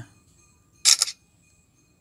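Samsung Galaxy Note 10 Plus camera app playing its shutter sound through the phone's speaker as a photo is taken: a short, bright double click about a second in.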